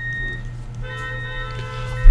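A short high steady tone, then a held tone of several stacked pitches lasting about a second, over a steady low hum.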